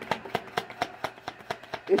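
A deck of oracle cards being shuffled by hand: a quick, even run of soft card clicks, about six or seven a second.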